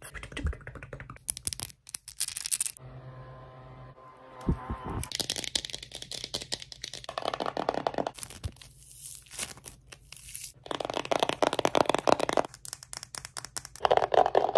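Fast, cut-up ASMR triggers: long fingernails tapping and scratching on a cardboard box, with crackling and scraping sounds in short bursts. A brief steady pitched hum comes about three seconds in.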